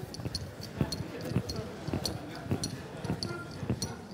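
Footsteps of a man walking on a hard floor, about two or three steps a second, with light ticking and rustle mixed in.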